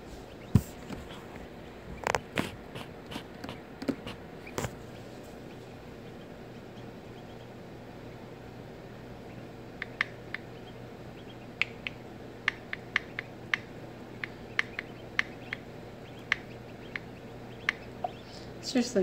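A newly hatched duckling struggling out of its egg. There are a few knocks and scrapes against the shell in the first seconds, then a run of short, high peeps at irregular intervals in the second half, over a steady low hum.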